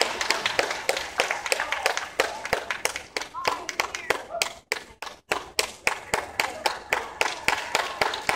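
Audience clapping, the separate claps quick and distinct at about four or five a second, with a short lull about five seconds in.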